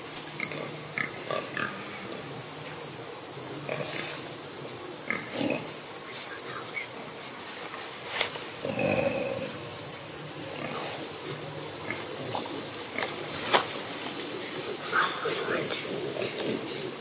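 Feral hogs grunting intermittently in the brush over a steady high hiss. A single sharp snap about thirteen and a half seconds in is the loudest sound.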